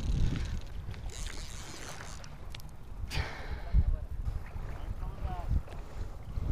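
Wind buffeting a body-worn camera's microphone as an uneven low rumble, with a sharp knock about three seconds in and a faint distant voice near the end.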